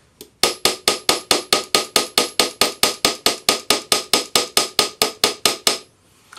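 Small Fretz hammer's polished ball end striking a thin metal ring strip on a steel bench block, quick even blows about five a second, each with a short metallic ring. The blows start about half a second in and stop just before the end, putting a hammered texture on the strip.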